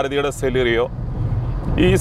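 A man talking inside a moving Maruti Suzuki Celerio. Under his voice, and in a short pause about a second in, there is a low steady drone of engine and road noise in the cabin.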